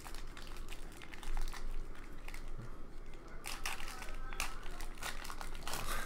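A stack of glossy trading cards being flipped through by hand. The cards slide and snap against each other in a run of quick rustles and clicks, busiest about halfway through and again near the end.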